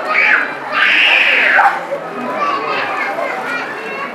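A person's high-pitched squeal rising and falling over about a second, with a shorter cry just before it, over the chatter of other voices.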